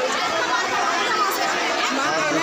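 Crowd of many people talking at once under a tent canopy: a steady babble of overlapping voices.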